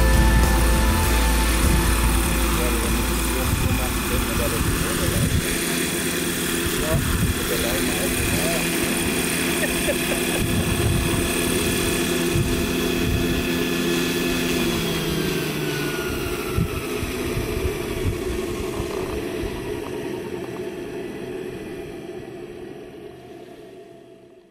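Radio-controlled scale model Bell 412 helicopter hovering low and touching down, its rotor and drive running with a steady whine. About fifteen seconds in the pitch slides down as the rotor winds down after landing, and the sound fades out near the end.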